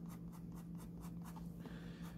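Faint sound of an ink pen drawing on sketchbook paper: a run of quick, short strokes, about five a second.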